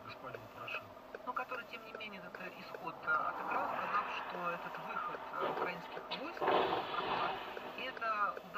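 Faint, indistinct talking inside a moving car, with a louder noisy swell a little past six seconds in.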